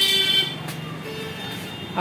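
A vehicle horn sounding steadily, a held tone of several pitches that cuts off about half a second in, followed by lower background noise with a faint hum.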